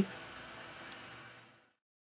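Faint room hiss with a weak low hum, cutting off to dead silence about one and a half seconds in.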